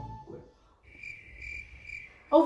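Crickets chirping: a high, steady trill that comes in about a second in and pulses slightly about twice a second.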